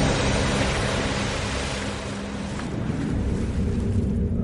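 Rushing, spraying water from a rider towed across a lake behind a motorboat, over a low steady hum, fading toward the end.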